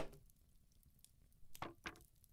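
Near silence, with two or three faint, short soft sounds near the end.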